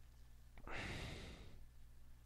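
A man sighs once into a close microphone, a single breathy exhale starting about half a second in and lasting just under a second, over a faint steady low hum.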